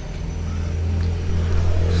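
A steady low rumble that grows slightly louder, with a faint high whine in the first second or so.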